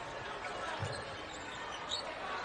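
Steady crowd noise in a basketball arena, with one low thump of a basketball bouncing on the hardwood floor about a second in.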